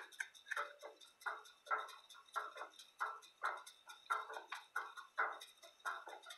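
Computer keyboard being typed on: a string of short, irregularly spaced key clicks, about two or three a second, as a search query is entered.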